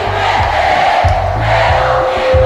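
Live DJ set of Brazilian brega dance music over a large sound system, with repeated deep bass beats and crowd noise.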